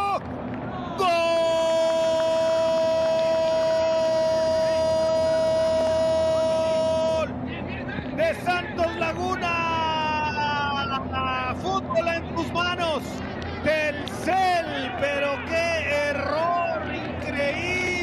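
A sports commentator's goal call: one long held "gooool" at a steady pitch, starting about a second in and lasting some six seconds, then a falling cry and rapid excited shouting.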